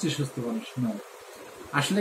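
A man talking, with a short pause about a second in.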